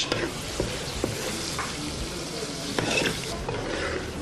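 Egusi soup frying in palm oil in a pot, sizzling steadily while it is stirred, with a few light clicks of the spoon.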